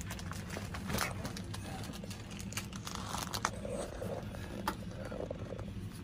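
A stack of magazines and loose toys being handled and shifted: scattered rustles and light knocks of paper and plastic over a steady low background hum.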